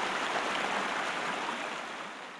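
Rushing floodwater, a steady wash of noise that slowly fades out near the end.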